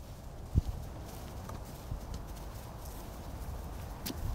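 Soft footstep thumps on grass, one stronger thump about half a second in, over a low wind rumble on the microphone.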